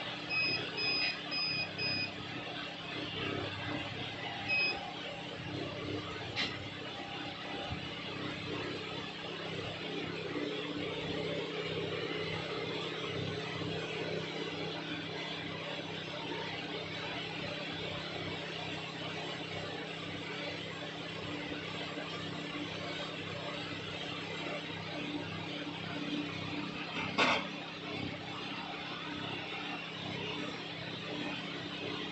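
Hot air rework station blowing with a steady hiss and low hum while an IC on a phone mainboard is heated. Four short electronic beeps come in the first two seconds, one more comes a couple of seconds later, and there is a sharp click near the end.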